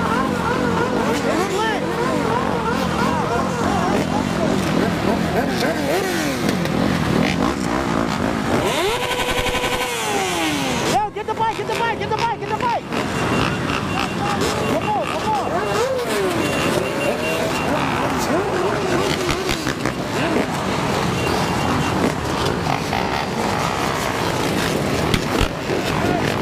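Many dirt bike, ATV and scooter engines idling and revving together, their notes rising and falling over one another. About ten seconds in, one engine's note falls steeply.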